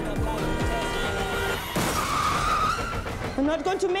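Film car-chase sound mix: cars speeding under a music score, with a tyre squeal starting a little before the halfway point. A voice speaks briefly near the end.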